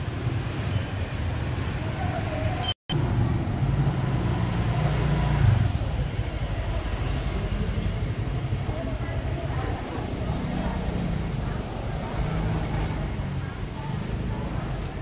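Street-market ambience: a steady low rumble of motorbike and scooter traffic with people's voices in the background. The sound drops out completely for a split second about three seconds in.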